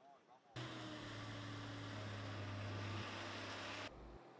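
Heavy engine of construction machinery running steadily with a low hum and a lot of noise. It starts abruptly about half a second in and cuts off just before the end.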